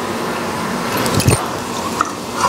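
Oil sizzling steadily as potato balls deep-fry in an iron kadai, with a perforated steel ladle clinking against the pan about a second in as a fried ball is scooped out.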